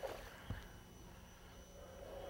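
Faint splashing of a hooked bass at the water's surface beside a boat as it is played in, with one soft knock about half a second in.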